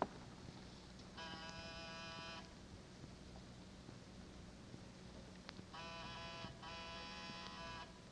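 Electric door buzzer sound effect pressed three times: one buzz of about a second, a pause, then two more buzzes back to back, over a faint steady recording hum.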